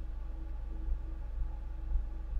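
Steady low electrical hum with a faint steady higher tone above it; nothing else is heard.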